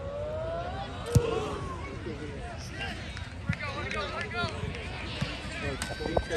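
A football kicked off a tee with a single sharp thump about a second in, amid spectators shouting and calling out.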